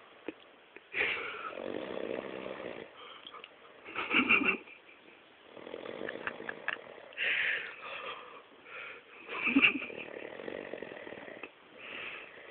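A man passed out drunk, snoring in several separate snores a few seconds apart.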